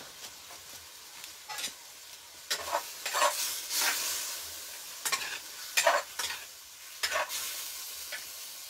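A spoon stirring and scraping in a clay cazuela over a wood fire, in irregular strokes, over the steady sizzle of food frying in the pot.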